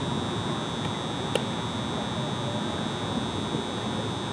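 A steady high-pitched whine runs without a break over a low background murmur of outdoor ambience, with one short sharp click about a second and a half in.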